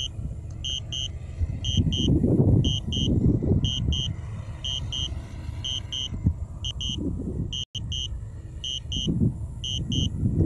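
Drone controller's low-battery warning for a DJI Spark returning home on its own: two short high beeps about once a second, repeating steadily. Under the beeps, wind rumbles on the microphone in uneven gusts.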